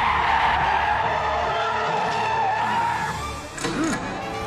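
Sports car's tyres squealing in a long skid, loud at first and fading out about three seconds in, with a short sharp sound near the end. Background music continues underneath.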